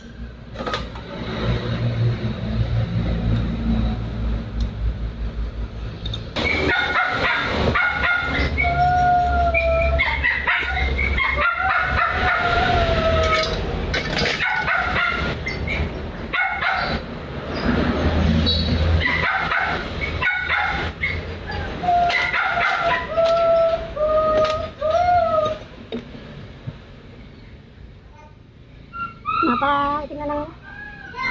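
A dog whining in repeated wavering cries of about a second each, starting about six seconds in, over scattered metallic clicks of hand tools and a steady low hum.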